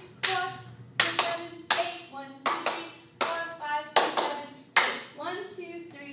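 Hand claps in a steady rhythm, about eight claps a little under a second apart, with a woman's voice sounding briefly between the claps.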